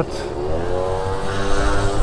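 Gilera Stalker scooter's small two-stroke engine pulling away, its pitch rising over the first second and then holding steady.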